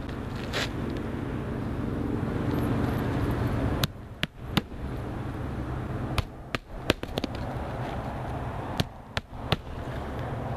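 Hammer driving roofing nails into asphalt shingles: about ten sharp strikes, spaced unevenly, with a quick run of them in the middle. A steady low engine hum runs underneath, loudest in the first four seconds.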